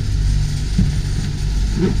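Marine air-conditioning units running: a steady, loud, low mechanical hum from the compressors and fans.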